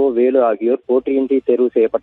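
A man speaking Tamil without a break, in a thin, telephone-line sound.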